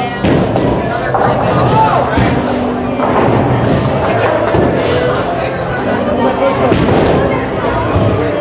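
Bowling alley din: music over the house speakers, voices, and the rumble and clatter of balls and pins from the lanes, with scattered knocks throughout.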